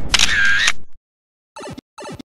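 A short intro sound effect, under a second long, with a pitched tone that dips and comes back. It cuts off suddenly, and two brief clipped fragments follow near the end.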